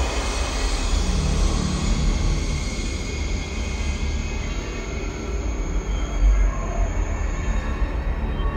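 A loud, steady rumbling noise with sustained high tones over it, swelling in at the start. It is part of the video's soundtrack.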